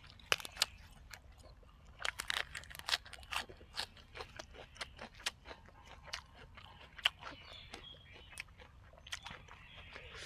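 Close-up mouth sounds of a man chewing a leaf-wrapped bite of red ant egg salad with fresh raw vegetables: irregular crisp crunches and wet clicks, busiest a couple of seconds in and again near the end.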